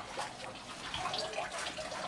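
Water from a small aquaponics pump trickling and splashing steadily into a gravel grow bed.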